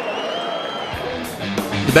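Crowd noise tails off, and about a second in background music with a guitar comes in.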